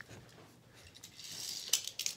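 Faint handling noise: a soft rustle that builds about a second in, and a couple of light clicks near the end.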